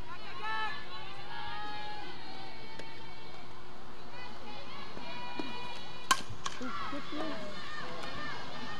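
A softball bat hits the ball once, a sharp crack about six seconds in, over steady chatter and shouting from players and spectators.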